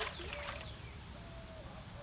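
Birds calling faintly: several short whistles that slide downward in pitch, with a few short low steady notes between them.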